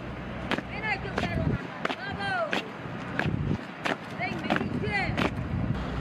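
Honour guard's footsteps striking the tarmac in slow, even time, about two sharp steps a second, as they carry a coffin. High-pitched voices rise and fall over the steps.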